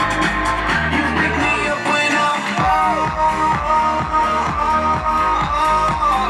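Loud music with held notes; a steady beat of about two thumps a second comes in about halfway through.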